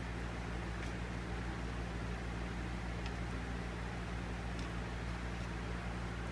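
A steady low hum with an even background hiss, unchanging in level, with a few faint light ticks.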